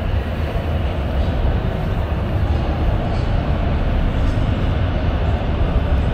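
Metro train running at the platform: a steady low rumble with a rushing noise over it.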